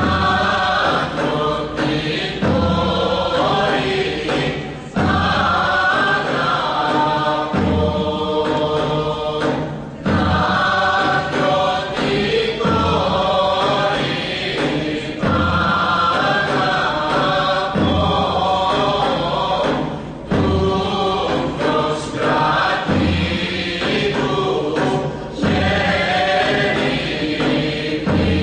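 Greek folk song from Macedonia sung by a group of voices in phrases with short breaks between them, over a low beat that recurs about every two and a half seconds.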